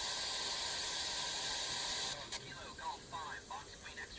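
Demodulated FM downlink audio of an amateur-radio repeater satellite: steady radio static hiss, which drops about two seconds in as a faint, thin amateur operator's voice comes through the satellite.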